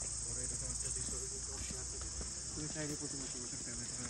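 Steady, unbroken high-pitched drone of insects in the surrounding trees and shrubs.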